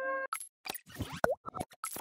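The last held chord of background music cuts off, followed by a quick, uneven run of short clicks and pops, with one plop-like blip that swoops down and back up about a second in: edited-in sound effects for an animated logo transition.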